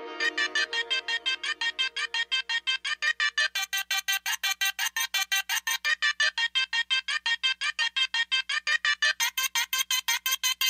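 Trap music: a high-pitched synth stutters in rapid, even pulses, about five a second, with no bass, as a lower plucked melody fades out over the first two or three seconds.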